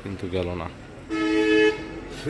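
A vehicle horn beeps once, a steady half-second toot at one unchanging pitch, about a second in.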